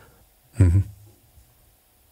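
A short pause in speech: one brief voiced syllable from a man, a little after half a second in, then quiet room tone.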